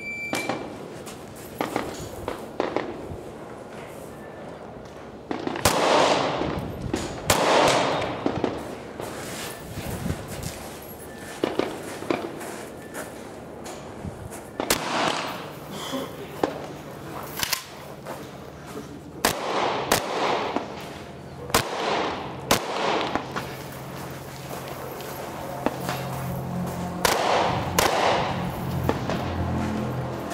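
Semi-automatic rifle shots fired in irregular strings, each sharp crack followed by a short echo, some much louder than others.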